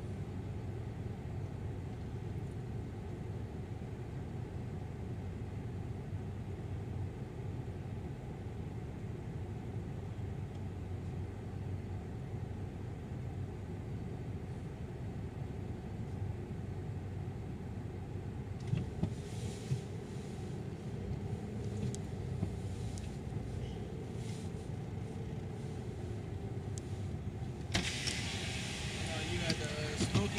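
Car engine idling, heard from inside the cabin as a steady low rumble. Near the end the driver's power window goes down and outside noise comes in.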